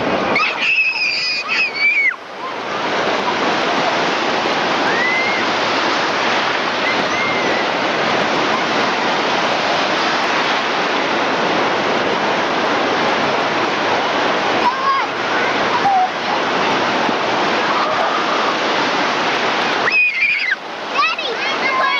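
Steady rush of ocean surf breaking and washing around waders, with a child's high-pitched shout about a second in and a few faint distant calls later on.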